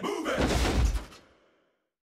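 A heavy, bass-heavy booming thud from the cartoon's soundtrack, dying away about a second and a half in, then silence.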